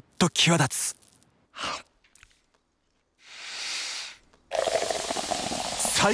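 Beer being poured from a can into a glass: a steady fizzing pour that starts about four and a half seconds in. Shortly before it, a soft hiss swells and fades for about a second.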